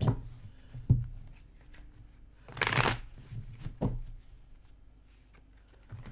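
A deck of tarot cards being shuffled by hand: a sharp knock about a second in, a dense rush of cards riffling near the middle, and a lighter click shortly after.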